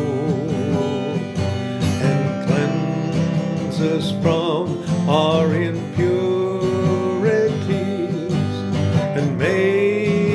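A man singing a worship song with vibrato to his own strummed acoustic guitar, with a new long note held near the end.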